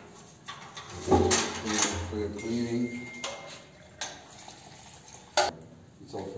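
Metal paint cans and their lids clinking and knocking as they are handled, a series of separate sharp knocks with the loudest near the end.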